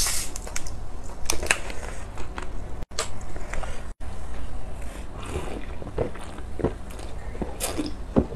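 Plastic bottle of lychee sparkling water being handled and opened: irregular clicks and crackles of the cap and bottle with fizzing, then drinking near the end.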